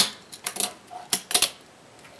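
A fingerboard clacking against a wooden tabletop during a trick: a quick series of sharp clicks, about six in two seconds, the loudest at the start.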